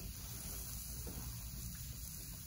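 Quiet room tone: a faint, steady background hiss with no distinct sound.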